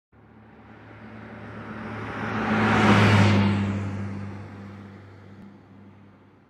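A car pass-by whoosh sound effect: a rush of noise that swells to a peak about three seconds in and then fades away, over a steady low hum.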